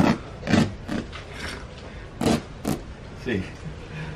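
Old fabric pillow being handled and pulled apart by hand: a handful of short cloth rustles and scuffs.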